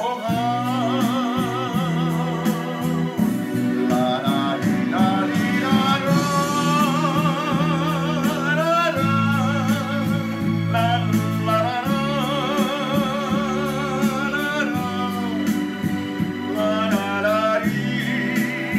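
A man singing a slow ballad, his held notes wavering with strong vibrato, over an instrumental backing track with sustained low chords.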